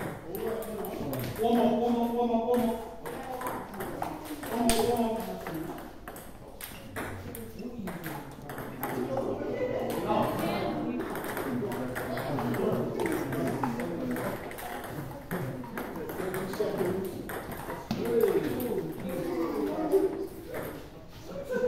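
Table tennis balls clicking repeatedly against paddles and tables in irregular rallies at several tables at once, over background chatter.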